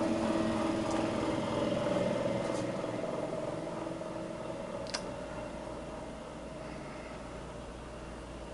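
A fan motor humming steadily, growing fainter after about three seconds, with a single light click about five seconds in.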